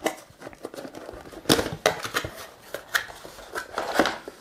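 Cardboard box being opened and its packaging handled: flaps pulled open and the contents slid out, giving irregular sharp clicks and rustles, the loudest about a second and a half in.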